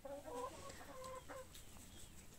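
A domestic hen giving soft, low clucking calls for about the first second and a half, then falling quiet.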